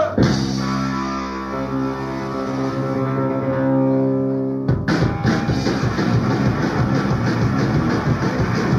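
Live punk rock band on a raw cassette bootleg. An electric guitar chord rings out steadily for nearly five seconds, then drums and guitars crash in together, suddenly launching into a fast song.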